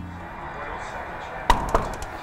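Knocking on a door: a couple of quick knocks about a second and a half in, after a stretch of quiet room noise.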